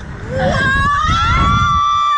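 A woman screaming as the slingshot ride launches. The scream rises steeply in pitch and then holds high and steady, over a low rush of wind noise in the first second and a half.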